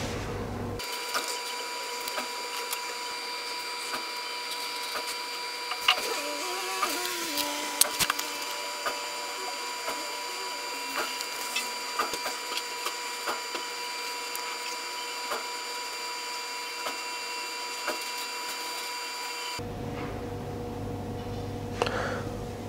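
A steady electrical whine made of several high tones over a faint hiss, with scattered faint clicks. It starts and stops abruptly.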